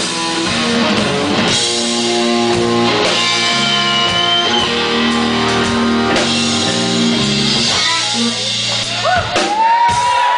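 Live electric blues: a Stratocaster-style electric guitar through an amplifier holds long sustained notes over the band's bass and drums, with bent notes gliding in pitch near the end.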